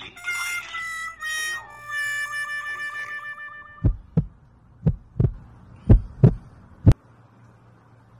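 A comedy sound effect of a wind instrument playing about four falling notes, the last one long and wavering, in the manner of a sad trombone. This is followed by heavy low thumps in pairs about once a second, like a heartbeat sound effect, the last one single.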